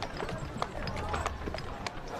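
Horse hooves clip-clopping: a run of light, irregular clops over a low rumble.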